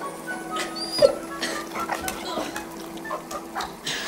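Sounds from a wet golden retriever being bathed, with a sharp hit about a second in, over steady background film music.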